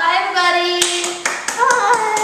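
Hands clapping: a quick run of claps that starts about a second in.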